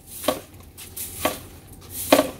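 Broom sweeping fallen leaves and grit on a dirt path, with short strokes about a second apart.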